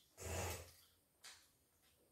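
A short, soft breathy sound from a person, about a quarter of a second in, followed by a faint click about a second later.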